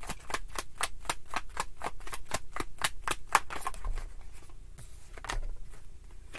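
A tarot deck being shuffled by hand: a quick, even run of crisp card snaps, about four to five a second, thinning to a few softer snaps after about four seconds.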